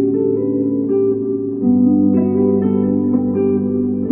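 Electric guitar played through an amplifier, with loops layered on a looper pedal: several sustained notes ring together, and the chord changes about one and a half seconds in.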